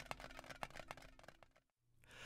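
Near silence: a faint low hum with scattered small clicks that thin out, then dead silence about three-quarters of the way in.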